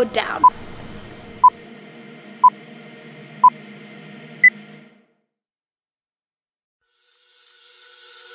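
Countdown-timer beeps closing out a rest break: four short, identical beeps once a second, then one higher beep that marks zero. Faint background music runs under them and cuts to silence about five seconds in; a rising hiss builds near the end.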